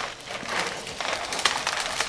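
Crackling and rustling of a thin transparent plastic pot, with the orchid's leaves and roots, as the root-bound plant is gripped and pulled to work it loose from the pot; a run of small crinkles and clicks that gets busier about half a second in.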